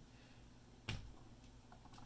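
A single sharp click about a second in: a battery pack of cylindrical cells on a circuit board being set down on a hard desktop. Near silence around it.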